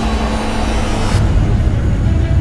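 Film trailer sound effects: a deep rumble under a rushing noise that cuts off suddenly just over a second in.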